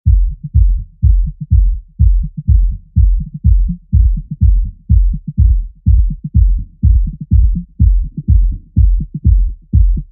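Opening of a minimal deep-tech house track: a kick drum on every beat, about two a second, with a bass line falling between the kicks. Only low sounds are heard, with no hi-hats or melody yet.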